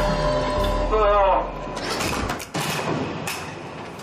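Cosmonaut-training centrifuge winding down at the end of a run: a low motor rumble with a whine falling in pitch, cutting off about two seconds in. A few clicks and knocks follow as the machine stops.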